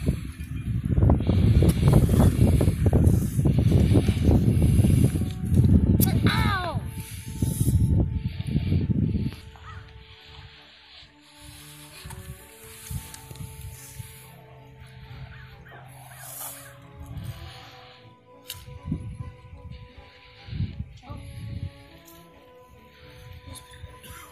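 Wind buffeting the microphone for about the first nine seconds, then the level drops and faint music with held notes is heard.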